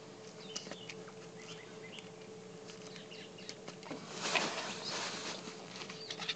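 Faint clicks and rustling from a phone being handled close to the microphone, over a steady low hum, with a louder rustle about four seconds in.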